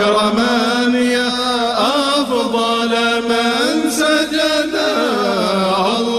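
Arabic devotional qasida chanted in long held, ornamented notes, the voice sliding between pitches.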